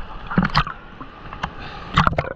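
Sea water sloshing and splashing against a camera held at the waterline, with louder washes of water about half a second in and again at the end.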